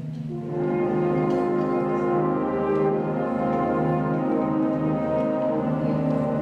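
School concert band playing slow, sustained chords with the brass to the fore, the sound growing fuller about half a second in and then holding steady.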